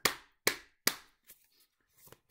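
Three sharp knocks about half a second apart, then a faint tap: knuckles rapping on a deck of tarot cards to cleanse it before shuffling.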